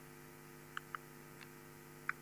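Low, steady electrical mains hum from the recording or sound system, with two faint short clicks a little under a second in.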